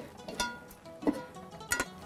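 Soft background music of a plucked string instrument, with two short clatters, about half a second in and near the end, as a baking dish is picked up from the counter.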